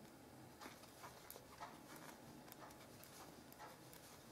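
Faint, irregular clicking of metal knitting needles as stitches are worked, about two clicks a second over quiet room hiss.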